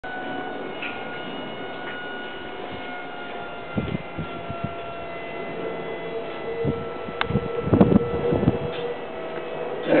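Electric recline-and-rise armchair's motor running with a steady whine that slowly falls in pitch, as the footrest rises; a few low knocks come about four seconds in and again near the end.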